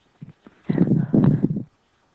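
A student's voice answering from across the room, muffled and indistinct, for about a second.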